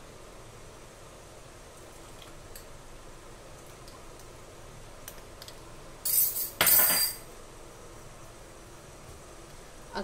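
A metal spoon scraping and clinking against a small glass bowl in two short bursts close together, about six seconds in, over a faint steady background noise.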